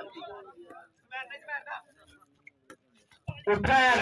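A man's commentary voice trails off, leaving a quiet stretch with faint voice fragments and a few short sharp clicks; near the end loud commentary starts up again.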